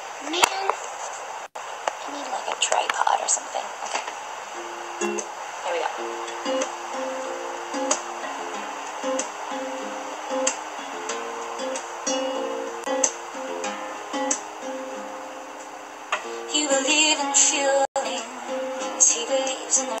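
Acoustic guitar with a capo, fingerpicked as the instrumental introduction to a song. It settles into a steady repeating picked pattern about five seconds in and grows busier near the end.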